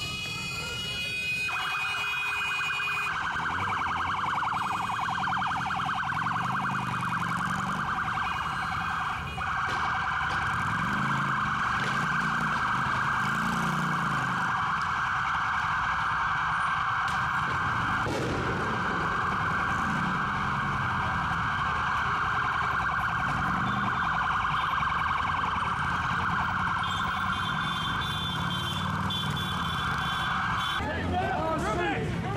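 Police car siren sounding loud and continuously in a fast warble. It winds up with a rising tone at the start and breaks briefly twice, about a third and two-thirds of the way through.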